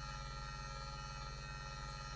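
Faint, steady electrical mains hum from the microphone and PA system, unchanging throughout.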